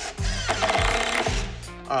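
A cordless drill runs for about a second, driving a screw into a wall-mounted sign, over background music with a steady bass beat.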